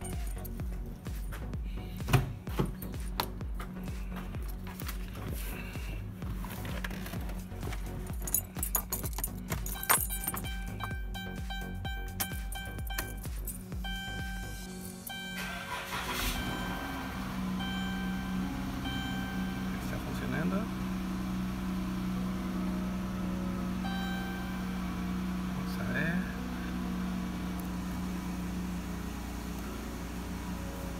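Keys jangling and handling clicks, then about halfway through the 2015 Chrysler Town and Country's 3.6 L Pentastar V6 is started and settles into a steady idle. This is the test start after intake manifold work to cure a cylinder 2 misfire (code P0302).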